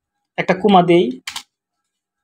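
A few clicks of computer keyboard keys being typed, heard with a man's voice speaking over them.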